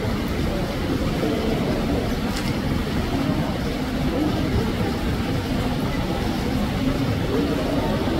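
Steady low rumbling background noise with an indistinct murmur of voices.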